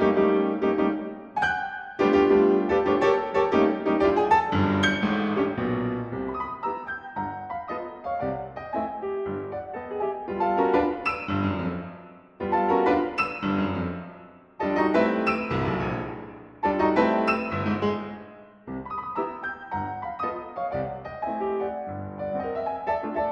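Solo piano playing a ragtime-style piece in phrases of struck chords and runs, each dying away before the next begins.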